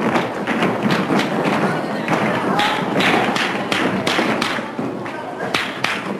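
Many heeled shoes knocking on a wooden floor as a crowd walks about, with the overlapping chatter of many voices.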